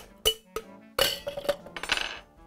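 Ice cubes dropped into a stainless steel cocktail shaker tin, several sharp clinks with a brief metallic ring, the loudest about a second in.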